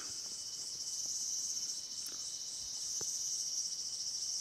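Steady, high-pitched chorus of insects chirring in and around a ripening rice field.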